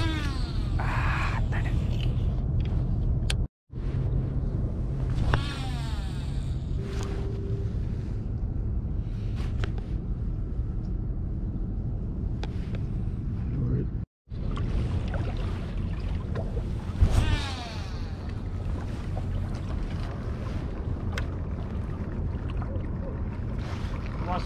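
Wind rumbling on an action-camera microphone by the water, broken by two brief silent gaps. Three times a falling whine sweeps down in pitch over about a second: a baitcasting reel's spool spinning as line is cast out.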